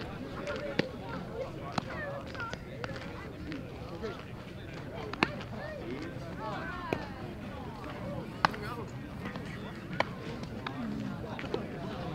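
Indistinct chatter of voices at a baseball game, broken by about six sharp clicks or knocks spread a second or more apart.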